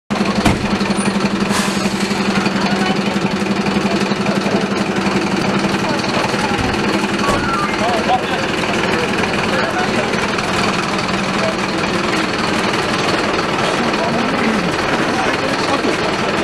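A motor running steadily with a rapid, even pulse. It is strongest in the first half and fades after that, under the talk of people standing around.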